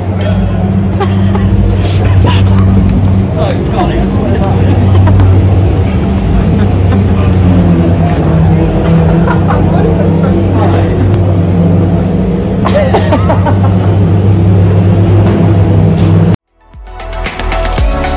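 A steady low engine hum with indistinct voices over it, cutting off abruptly near the end.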